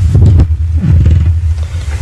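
Steady low hum, loud and without speech, the same hum that runs under the talk's speech on either side.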